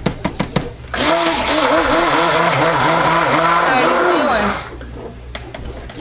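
Stick blender running in raw soap batter for about three and a half seconds, its motor pitch dipping and rising about three times a second as it is worked through the batter, then cutting off. A few sharp clicks and knocks come just before it starts.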